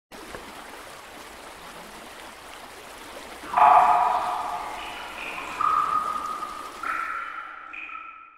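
Sound-designed logo intro: a soft, steady watery hiss, then about three and a half seconds in a sudden loud ringing tone, followed by several more ping-like tones that come in one after another and ring on, overlapping.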